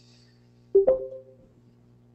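A short two-note chime, the second note higher, rings out about a second in and fades quickly, like a webinar app's notification tone. A faint steady electrical hum sits under it.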